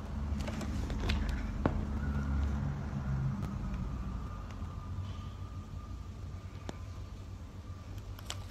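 Recording of a package of dead-stock photographic film being opened: a few small sharp clicks and crinkles over a low rumble, with a faint steady tone underneath. The sound is very subtle, likened to listening to your own eye blinking.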